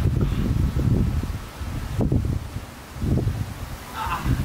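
Wind buffeting the microphone, a low irregular rumble that comes and goes in gusts.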